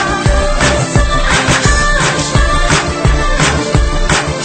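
A recorded song playing, with a steady beat.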